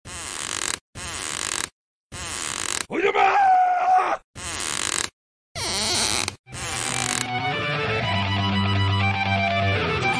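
Soundtrack audio chopped into short bursts of harsh noise, each cut off by abrupt dead silence, with a strained, wavering vocal-like yell about three seconds in. From about seven seconds, guitar music comes in and plays steadily.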